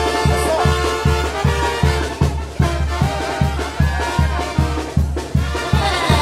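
Brass band music: horns playing held, chord-like tones over a steady bass beat of about three beats a second, an instrumental passage with no singing.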